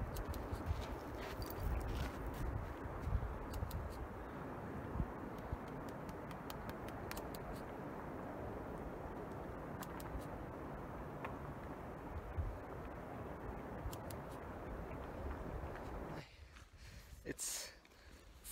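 Steady rushing noise of a distant waterfall, with the low, uneven rumble of wind on the microphone. It stops abruptly near the end.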